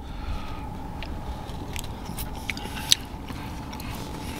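A person chewing food close to the microphone. Small wet mouth clicks, with one sharper click near three seconds in, sit over a steady faint hum.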